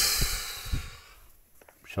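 A long sigh of breath that starts loud and fades away over about a second, with a couple of soft handling bumps under it.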